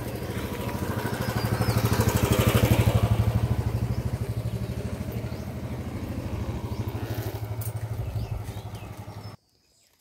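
Small motorcycle engine running while being ridden, with steady rapid firing pulses that get louder about two to three seconds in and then ease off. It cuts off abruptly near the end.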